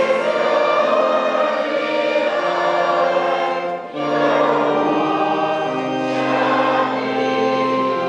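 Church choir and congregation singing a hymn in held notes, with a short break between lines about four seconds in.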